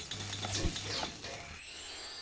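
Cartoon sound effects: a busy run of quick swishing strokes, then a thin rising magical shimmer near the end.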